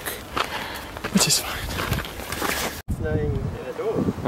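Footsteps and rustling on a rough mountain trail with short breathy voice sounds close to the microphone; the sound breaks off abruptly nearly three seconds in, and a voice follows.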